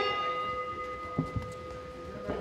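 Round-start bell struck once just before, its several clear tones ringing on and slowly fading, signalling the start of the fight.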